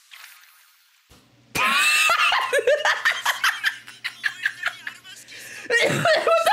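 A person laughing hard in rapid bursts, starting suddenly about a second and a half in after a near-quiet start.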